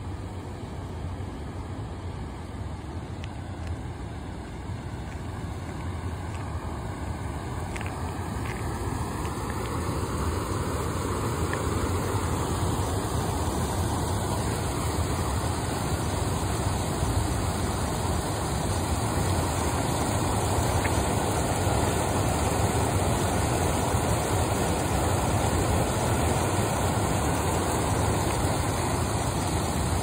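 Steady rushing outdoor noise with a low hum underneath, growing louder about ten seconds in and holding there.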